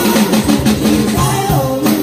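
Live band playing a pop song: strummed acoustic guitar and a drum kit with cymbals, with singing through small amplifiers. The loudest drum and cymbal hit falls near the end.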